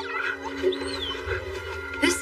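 A young animated creature's high, whining call, rising and falling once about a second in, over steady sustained background music.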